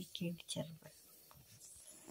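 A voice briefly in the first half second, then a faint, quiet background hiss with a couple of tiny clicks.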